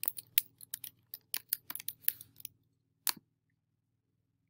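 Computer keyboard typing: a quick, irregular run of about fifteen key clicks over the first two and a half seconds, then a single mouse click just after three seconds in.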